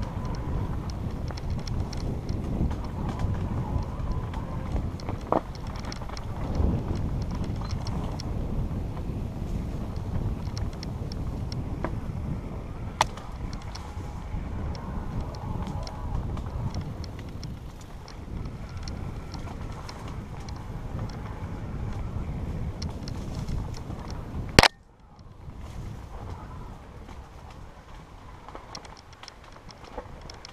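Mountain bike running fast down a dirt singletrack: steady wind noise on the ride camera's microphone mixed with the bike's rattle and tyre noise over rough ground. Sharp knocks stand out about halfway through and, loudest of all, near the end, after which the noise briefly drops.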